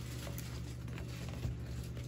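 A steady low hum with a few faint taps and rustles of packaging being handled during an unboxing.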